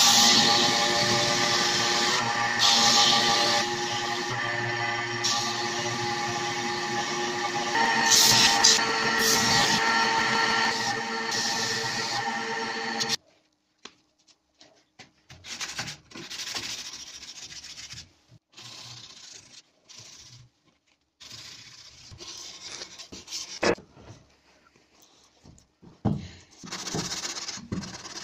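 Electronic music over a belt grinder grinding a steel axe head for about the first half, stopping suddenly. Then quieter, irregular strokes of hand sanding: abrasive paper on a stick rubbed along a steel axe head cut from a saw blade.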